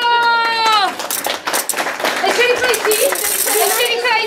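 A voice holds the last chanted note for about a second, then children's hand percussion (rhythm sticks and shakers) clicks and rattles loosely, without a beat, amid children's chatter; near the end comes a brief hissing shake.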